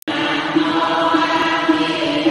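Buddhist devotional chanting: voices intoning on a steady, held pitch, starting just after a brief silence.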